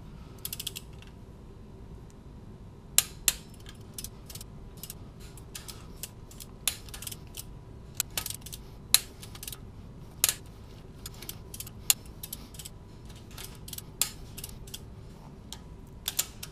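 Torque wrench ratcheting on cylinder-head stud nuts as they are tightened to 40 ft-lb. The clicks come in short, irregular runs, with a few sharper, louder clicks scattered through.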